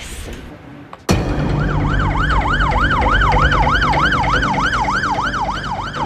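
Emergency vehicle siren in fast yelp mode, its pitch sweeping up and down about three times a second over a low traffic rumble. It comes in suddenly about a second in.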